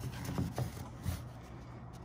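A blue paper shop towel wiping the plastic top of a new cartridge fuel filter, giving a few faint scuffs and rubs in the first second or so, over a steady low hum.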